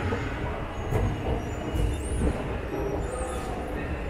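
Escalator running while being ridden: a steady low mechanical rumble, with a few louder bumps.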